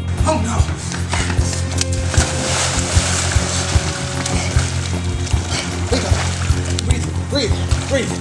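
Water splashing and sloshing in a swimming pool as a body is moved through it, under steady background music.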